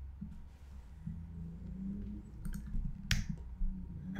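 Computer mouse clicks over a steady low hum: two faint clicks about two and a half seconds in, then one sharp click a little after three seconds.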